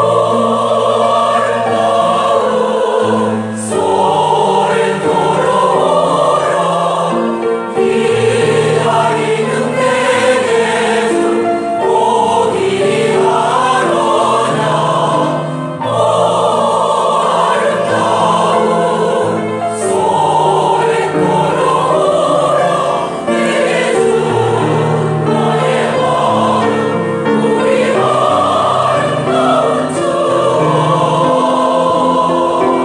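Mixed senior choir of men's and women's voices singing in harmony, in sustained phrases a few seconds long.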